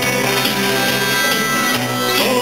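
Live rock band playing a song, with electric guitar, hand drums and keyboard.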